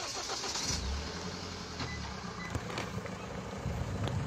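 A vehicle's engine running, with a low rumble that swells for about a second and a half shortly after the start, over a steady wash of road or wind noise.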